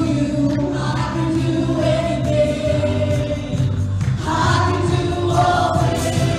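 A live worship band and a group of singers performing a gospel worship song, with voices holding long sung notes over electric guitar, keyboard and drums.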